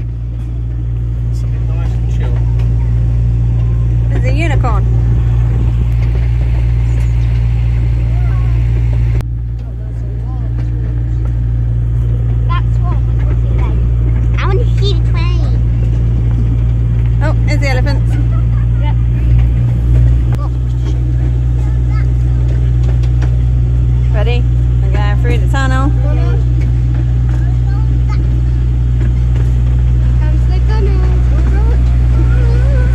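Miniature railway train's engine running steadily, a loud low drone, with a brief dip in level about nine seconds in.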